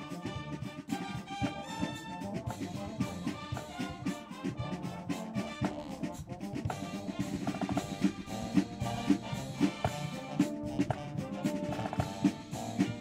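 Massed marching bands playing together: a brass melody over snare and bass drums, with the drum strokes standing out more sharply in the second half.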